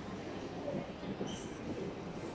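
Steady background din of a large, echoing indoor shopping hall, with faint voices of people in it.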